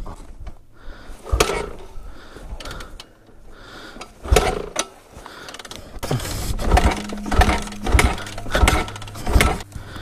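A dirt bike being kick-started without catching: the kickstarter is stamped and ratchets round, a few times early on and then about once a second in the second half. The dead engine does not fire.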